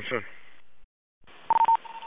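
Two-way radio traffic: a word, then open-channel hiss that cuts off just under a second in. A new transmission opens with hiss and a short double beep, a radio alert tone, about a second and a half in.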